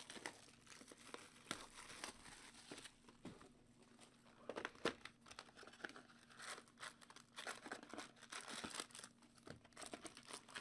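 Trading-card packs and their cardboard hobby box being handled and opened: faint, irregular crinkling and tearing of pack wrappers and cardboard, with the loudest crackle about five seconds in.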